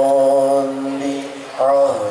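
Sholawat, Arabic devotional chanting: a male voice holds one long steady note, which fades about one and a half seconds in before a new sung phrase begins near the end.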